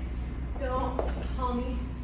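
A woman singing the song's melody in short held phrases. A single sharp knock comes about halfway through, over a steady low hum.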